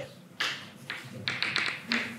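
Chalk tapping and scraping on a chalkboard as figures and dots are written: a series of short, sharp taps, about six in two seconds.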